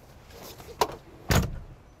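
A sharp click, then a heavier thump with a short low rumble about a second and a half in.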